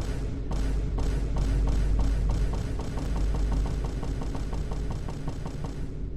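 Dark, tense background music: a deep low drone under a pulsing beat, about two beats a second at first and then quicker from about a second and a half in.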